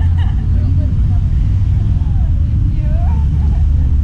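Steady low rumble of wind buffeting the microphone, with faint voices and laughter heard over it a few times.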